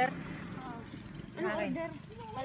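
A brief high-pitched child's voice about a second and a half in, over a faint low steady rumble.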